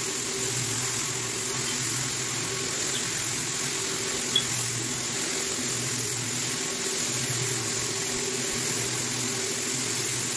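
JaniLink rotary floor buffer screening the old finish off a hardwood floor: a steady motor hum under an even hiss of the abrasive screen on the wood, the hum swelling and fading slowly as the machine is swung across the floor.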